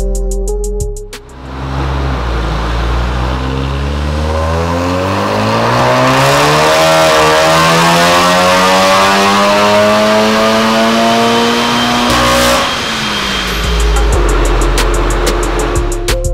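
Turbocharged 2.0-litre four-cylinder of a Stage 2 tuned VW Golf R (catless downpipe, Remus exhaust) doing a full-throttle pull on a rolling-road dyno. The engine note rises steadily in pitch for about ten seconds, then cuts off as the throttle is released. Background music plays briefly at the start and again near the end.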